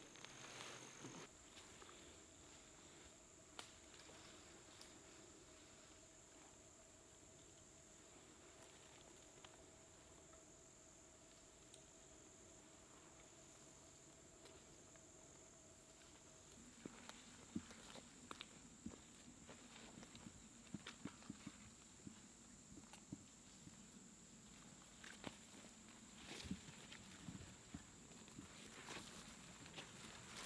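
Near silence for the first half, then faint, irregular rustling and crackling of leaves, grass and twigs as a sniper in a ghillie suit crawls slowly through undergrowth.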